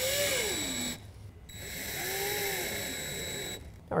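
Cordless drill driving screws into a tonneau cover's canister brackets in two runs, the motor's whine rising and then falling in pitch each time. The first run stops about a second in; the second starts about half a second later and stops near the end.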